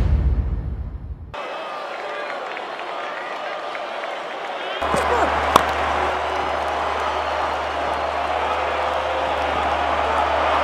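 Intro music fading out about a second in, then open-air cricket ground ambience with faint voices, and a single sharp crack of a cricket bat striking the ball about five and a half seconds in.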